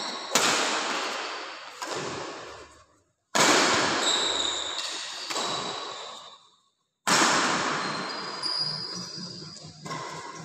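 Badminton rally: rackets strike the shuttlecock about every second and a half, each hit ringing on in the hall, with high squeaks of shoes on the court floor. The sound cuts to silence briefly twice between hits.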